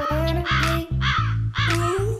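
Crow cawing over and over, about two caws a second, mixed over background music with a steady pulsing bass beat.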